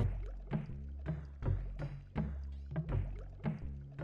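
Background music with a steady beat: evenly spaced percussive hits about every 0.7 seconds over a sustained low bass.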